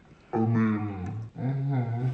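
A person's wordless, low-pitched drawn-out vocalizing, like a moan or mock growl: two long sounds, the first starting about a third of a second in and the second following right after it.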